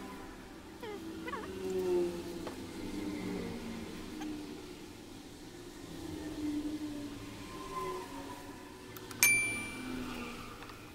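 Metal chainsaw parts being handled during reassembly, with one sharp metallic clink near the end that leaves a brief high ringing tone, like a metal part knocking on the steel workbench.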